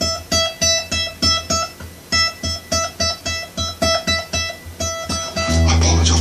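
Ovation Standard Balladeer acoustic guitar: the same single high note on the E string at the 12th fret, plucked over and over in a thumb-then-three-fingers picking pattern at about three notes a second, with a short break about two seconds in. It is played slowly because the player's cold fingers are not working. Near the end a steady low hum comes in.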